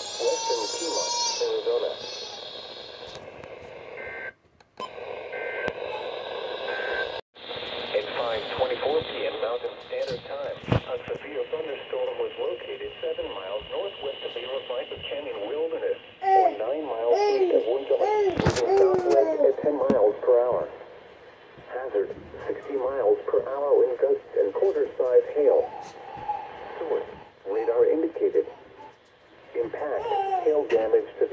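A NOAA Weather Radio broadcast voice coming through the small speaker of a Midland weather alert radio, thin and narrow-sounding, with a couple of brief dropouts early on.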